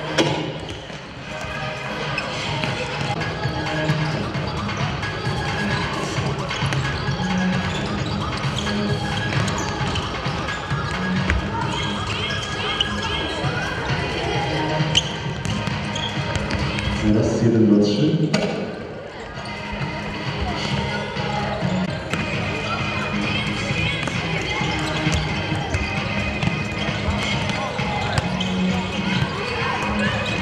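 Music playing in a large, echoing sports hall over a hubbub of voices, with the thuds of footballs being kicked and bounced.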